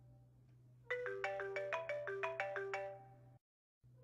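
A mobile phone ringtone playing a melody of short, ringing notes for an incoming call. It starts about a second in, breaks off briefly near the end, then starts over.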